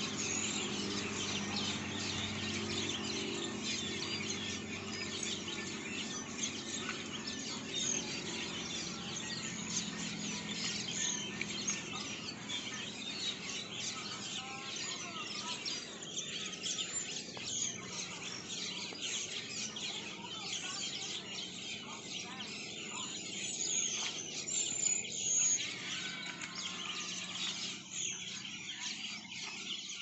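Otters chirping with a dense, continuous run of high-pitched squeaks while they play and eat in a shallow tub of water. The chirping thins a little in the second half.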